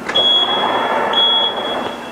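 Electric power tailgate's warning beeper on a Hyundai Creta, a high steady beep broken by a few short gaps as the boot lid moves, over a steady rushing noise.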